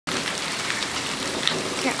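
Steady rain falling, an even hiss with scattered drop ticks.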